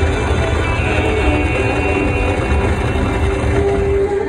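Buffalo Diamond slot machine's win animation: a loud low stampede rumble under the machine's music. The rumble drops away at the end as the reels return.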